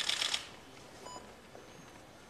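Press photographers' still-camera shutters firing in a rapid burst of clicks for about half a second at the start, then only room hum, with a faint short beep about a second in.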